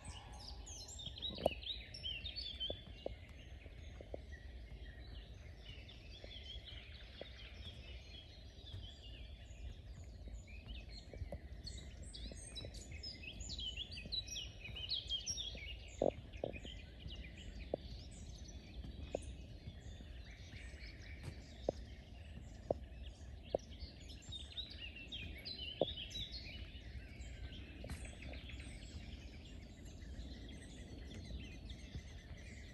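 Chorus of several songbirds singing and chirping in wet bog woodland, many overlapping trills and chirps. Occasional short knocks come through, the loudest about halfway, over a steady low rumble.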